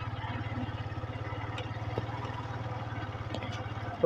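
A small engine running steadily at low speed, its firing heard as a fast, even pulse.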